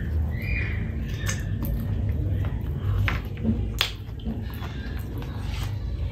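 Close-miked eating sounds of rice and pork curry eaten by hand: chewing and wet mouth noises with a few sharp smacks, the loudest nearly four seconds in.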